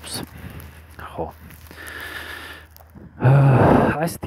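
A man's voice close to the microphone in short quiet bits, then near the end a loud breathy vocal sound lasting under a second.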